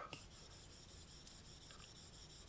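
Faint rubbing of an Apple Pencil tip stroking quickly back and forth across an iPad's glass screen.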